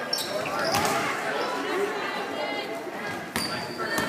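Gym basketball game: spectators shouting over the play, with a ball bouncing on the hardwood floor and sneakers squeaking, all echoing in a large hall. The knocks of the ball fall near the start, just before a second in, and shortly before the end.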